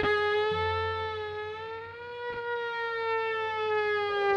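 Violin played through effects pedals, holding one long sustained note that bends slowly upward and then sinks back down, with a couple of faint taps.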